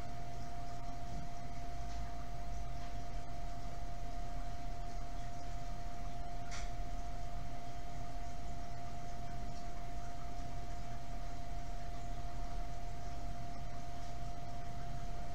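Steady background hiss and low hum with one held mid-pitched tone, and a single short click about six and a half seconds in.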